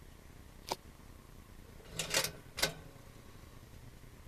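A single short click, then a cluster of sharp clicks and a clunk about two seconds in, and one more click: a Proctor Silex toaster's carriage lever being pressed down and latching as it is switched on.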